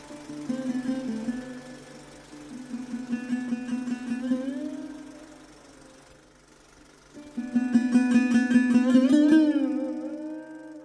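Sarod playing over a steady drone: plucked notes with sliding pitches, fading to a lull in the middle, then a fast run of plucked strokes from about seven seconds in, with notes bending upward near the end.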